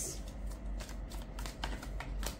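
A deck of tarot cards being handled: cards thumbed through and flicked off the deck, making a run of light, irregular card clicks.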